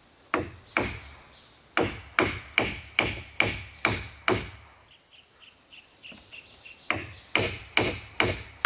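A heavy hammer driving a nail into a wooden rail. There are about twelve sharp strikes at two to three a second, in three runs: two blows, then seven, then, after a pause of about two seconds, three more near the end.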